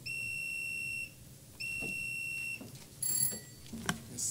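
An electronic beeper sounds two long, steady, high-pitched beeps of about a second each, with a short gap between them. Soon after comes a brief, louder, higher beep, then a click.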